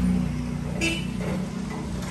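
Street traffic: a vehicle engine running with a steady low hum that fades after about a second, with a brief sharp sound just under a second in.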